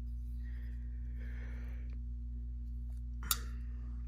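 Shirogorov Quantum folding knife being closed by hand: faint handling, then a single sharp click about three seconds in as the blade snaps shut. A steady low electrical hum sits underneath.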